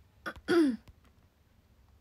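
A young woman's voice gives a short vocal "u" about half a second in, falling in pitch. It is the end of a drawn-out "ohayou" greeting and is preceded by a small click. Faint room tone follows.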